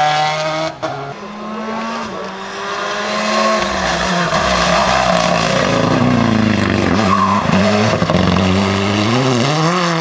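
Rally car engines at full stage speed: one car's engine cuts off suddenly under a second in and another takes over, its revs climbing and falling through gear changes. In the last few seconds the revs swing quickly up and down several times as the driver lifts and brakes for the corner.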